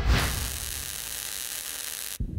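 A burst of static-like white noise that starts suddenly with a low thump and an even hiss, then cuts off abruptly after about two seconds. It sounds like a TV-static transition sound effect.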